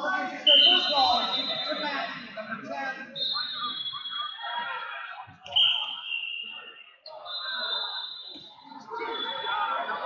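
Wrestling referees' whistles, about five long shrill blasts of a second or two each at slightly different pitches, over steady crowd chatter in a large, echoing hall.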